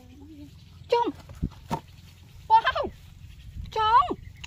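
Three short, high-pitched vocal calls, each falling in pitch, spaced over a few seconds, with a couple of light knocks between the first two.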